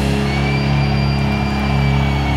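A symphonic metal band's last chord held and ringing out after the drums and cymbals stop: a steady low chord with a thin high tone sustained above it.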